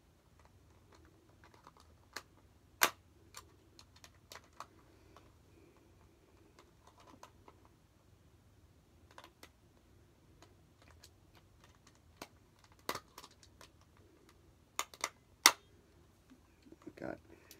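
Irregular small clicks and taps of a screwdriver and plastic parts as a screw is worked in a small battery-operated plush figure, a screw so stripped it barely turns. The loudest click comes about three seconds in, with a cluster of sharper clicks near the end.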